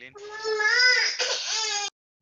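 A baby crying over a video-call line: one high, wavering wail of just under two seconds that cuts off abruptly near the end.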